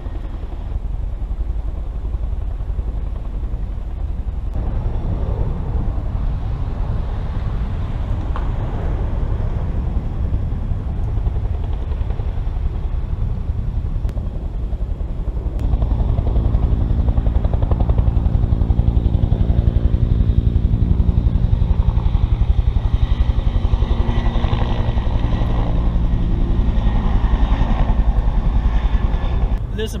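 Wind rumbling on the microphone, joined about halfway through by a steady, even-pitched engine drone that carries on almost to the end.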